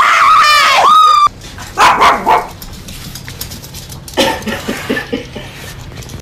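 An animal crying out: one long, high-pitched wail lasting about a second and a half, then a couple of short, loud yelps, and a run of quicker, fainter cries about four seconds in.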